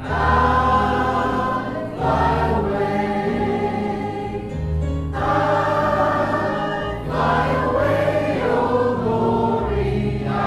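Small mixed choir of men and women singing a gospel hymn together in long, sustained phrases.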